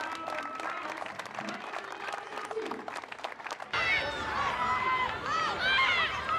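Scattered hand clapping with a few voices. Just under four seconds in it cuts abruptly to louder on-field sound: rugby players shouting short calls around a ruck over crowd noise.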